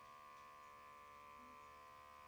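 Faint steady electric hum of a Fizzics DraftPour beer dispenser running as it draws beer up from the can and pours it into a glass.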